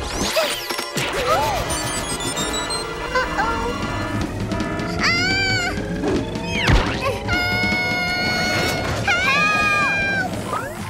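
Cartoon score music with slapstick crash and whack sound effects, and wordless cries from the characters rising and falling in pitch about halfway through and again near the end.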